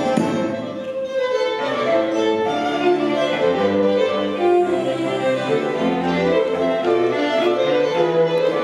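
A string quartet (two violins, viola and cello) playing a slow passage of held, bowed notes that move in steps, with the cello carrying a low line beneath. A fuller, busier band sound thins out about a second in, leaving the strings in front.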